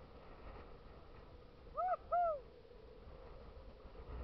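A bird calling twice in quick succession: two short hooting notes, each rising then falling in pitch, about two seconds in, over faint wind hiss.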